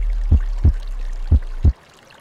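Deep bass thumps in pairs, like a heartbeat, about a second apart, over a low steady drone that cuts off near the end: an added soundtrack over the end card.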